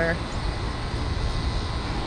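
Steady low outdoor rumble with a hiss over it, with no distinct event in it.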